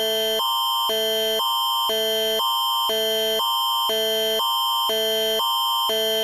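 Canadian Alerting Attention Signal (Alert Ready) sounding for an Environment Canada tornado warning. It is a loud electronic alert tone that switches between two chords about twice a second over a high steady tone.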